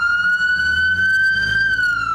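Ambulance siren on a slow wail: one long held tone that edges slightly higher, then starts to fall near the end, over the low rumble of the vehicle's engine.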